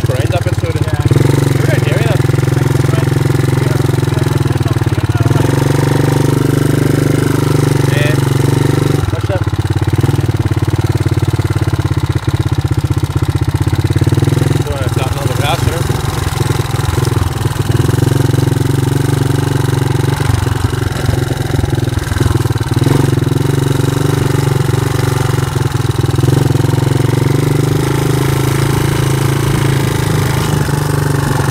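Yamaha Moto 4 quad's single-cylinder four-stroke engine running under the rider, heard close up, its note shifting every few seconds with the throttle as it crosses rough grass.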